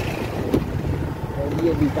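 Wind buffeting the microphone over the low, steady running of a motorcycle on the move, with a brief thump about half a second in. A man's voice speaks near the end.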